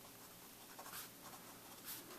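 Faint scratching of a pen writing on a paper worksheet, with a slightly stronger stroke about halfway through and another near the end.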